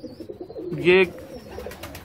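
Domestic pigeons cooing, a low wavering call, with one short spoken word about a second in.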